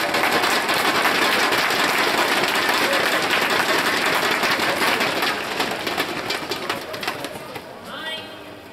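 Arena crowd clapping and cheering as a badminton rally ends with a point won, a dense patter of many hands with voices mixed in, fading away near the end.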